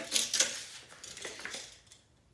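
A steel tape measure blade clicking and scraping against the MDF of a subwoofer box as it is drawn out of the slot port and laid along the edge. The sharpest clicks come in the first half second, then softer scraping that fades.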